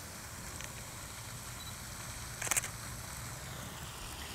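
A Canon DSLR's shutter firing once, a short sharp click about two and a half seconds in, over faint steady background noise.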